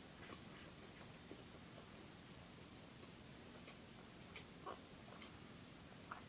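Near silence: faint room hiss with a few soft, scattered clicks of someone chewing a bite of cheese pizza.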